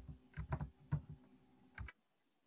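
A handful of soft, irregular clicks and taps, like keys being typed on a computer keyboard, heard through a video-call microphone.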